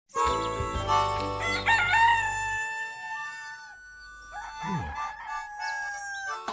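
A rooster crowing one long crow of about three and a half seconds, with a short rise in pitch partway through, over background music.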